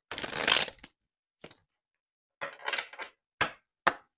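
A deck of oracle cards being shuffled and handled: a short rustling burst at the start, another about two and a half seconds in, and a few light taps of cards.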